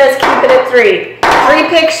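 A woman talking.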